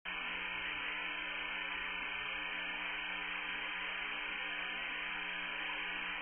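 Steady hiss and hum of an open voice radio link from the space station, cutting in abruptly, with no one talking on the channel.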